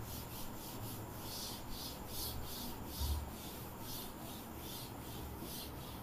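A duster rubbed back and forth over a chalkboard, erasing it with faint, quick scrubbing strokes, about two or three a second.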